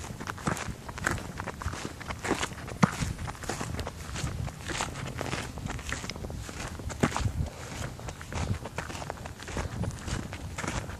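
Footsteps of a person walking, an irregular run of scuffs and knocks.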